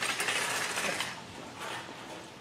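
A grocery shopping cart rattling and clattering with a rustle of packaging, loudest in the first second and then fading.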